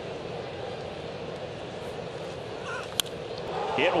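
Steady ballpark crowd murmur, then about three seconds in a single sharp crack of a wooden bat meeting a pitched baseball, hit hard for a home run.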